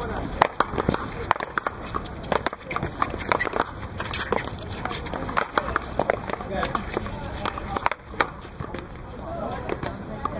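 Paddleball rally: repeated sharp cracks of the ball off wooden paddles and the wall, a few a second at irregular spacing, with shoes scuffing on the court.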